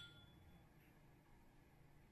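Near silence: room tone, with the faint ring of a struck drinking glass dying away in the first half-second after a toast clink.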